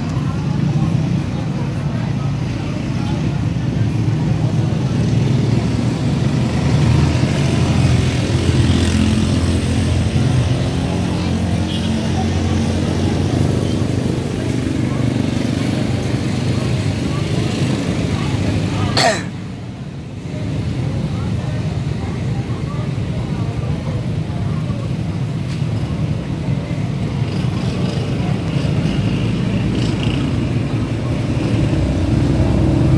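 Steady low rumble of a vehicle engine idling, with indistinct voices. A sharp click comes about two-thirds of the way in, and the sound dips briefly after it.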